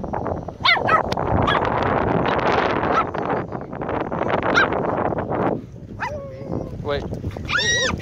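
Chihuahua yelping, then scrabbling hard in the sand for about four seconds as it goes after a crab, then several short whining yelps.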